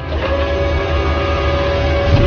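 Cinematic intro sound design: a deep rumble under one held tone that comes in just after a cut and slowly grows a little louder.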